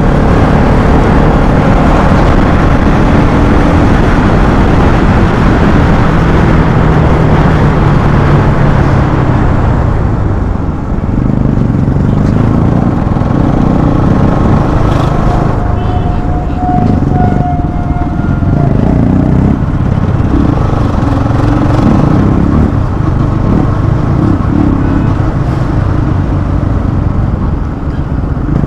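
Bajaj motorcycle engine running on the move, with dense noise under it from the ride; the engine note falls about eight seconds in as the bike slows, then rises and falls through the rest. A brief steady higher tone sounds for about two seconds just past the middle.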